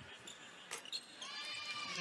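Faint basketball arena game sound: crowd murmur, a single sharp knock a little under a second in, then a rising high squeal in the last second.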